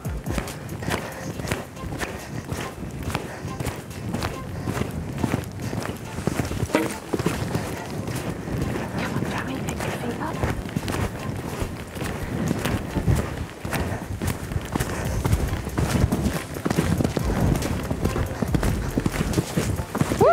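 Pony's hooves on a sand arena at canter, a run of soft, repeated hoofbeats, with low noise underneath throughout.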